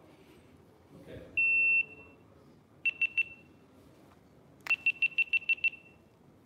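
An electronic beeper sounding at one high pitch: one long beep, then three short beeps, then a quick run of about eight short beeps.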